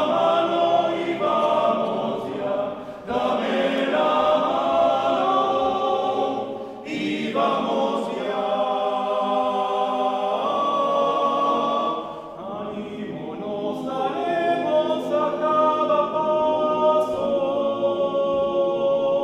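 Men's choir singing in several parts in a reverberant church, in long sustained phrases that break briefly about 3, 7 and 12 seconds in.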